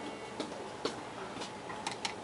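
Light, sharp ticks, about two a second, over a low steady hiss.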